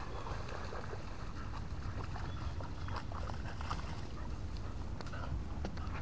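A dog paddling through creek water and scrambling out onto the bank: faint small splashes and rustles, more frequent in the second half, over a steady low background rumble.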